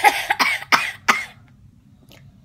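A girl's short breathy vocal bursts, about five in quick succession over the first second or so.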